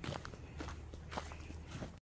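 Footsteps walking at a steady pace across grass strewn with dry fallen leaves, each step a soft brushing crunch.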